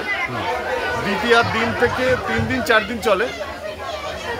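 A man talking, with other people chattering in the background.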